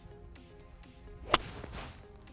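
A single crisp strike of a 7-iron on a golf ball about a second and a half in, a sharp click with a short fade after it. The coach judges the contact as maybe taking a little ground first.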